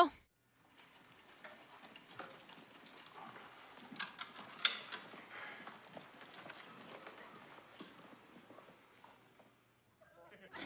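Hushed room with faint shuffling footsteps and rustling, a couple of soft knocks about four seconds in, over a faint steady high tone.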